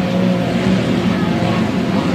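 A pack of 1.5-litre-class racing hydroplanes running at speed together, a steady engine drone, as they close in on a flying start.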